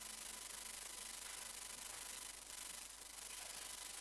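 Quiet room tone of a council chamber picked up by the sound system: a faint steady hiss with a thin steady tone underneath, and no distinct events.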